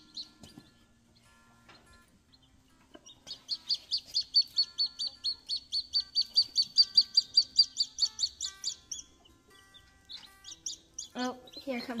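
Baby chicks peeping: a fast run of high, shrill peeps, several a second, for about five seconds in the middle, with a few scattered peeps before and after.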